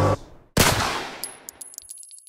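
Music and chanting cut off suddenly, then a single loud gunshot with a reverberant tail, followed by a few faint, high metallic clinks that die away.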